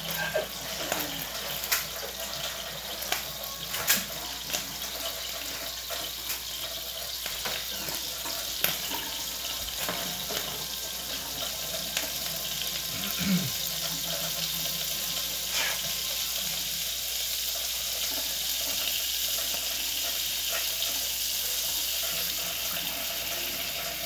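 Steady sizzling hiss of a tortilla frying in oil in a skillet, growing slightly louder in the second half. Scattered light clicks and knocks of kitchen items being handled.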